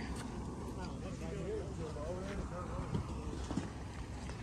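Faint, distant voices of people talking over a steady low outdoor rumble.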